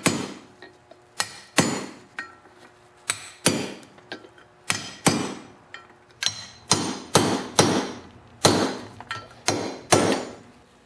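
Hammer striking a steel socket set on the outer race of a new sealed wheel bearing, driving it into the ATV's cast steering knuckle: sharp metallic taps about twice a second, unevenly spaced, each ringing briefly. The blows go only on the outer race so the bearing goes in evenly without damage.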